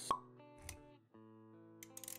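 Intro-animation music with sound effects: a sharp pop just after the start, a short low whoosh near the middle, then held synth-style notes returning with a few quick ticks near the end.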